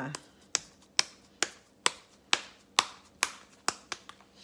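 Hands slapping a ball of moist mashed potato between the palms to flatten it into a patty, sharp evenly spaced slaps about two a second.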